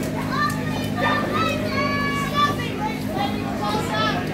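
Spectators yelling and cheering, with high-pitched children's voices prominent, over a steady low electrical hum.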